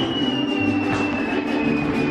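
Mariachi band music with held chords and a moving bass line. Across it a single thin high tone slides slowly and steadily downward.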